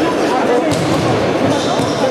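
Futsal ball kicked and bouncing on a sports hall floor, with one sharp impact about two-thirds of a second in, over indistinct players' shouts echoing in the hall.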